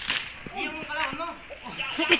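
Sharp snapping clicks just after the start, then a person's voice with a few short knocks mixed in.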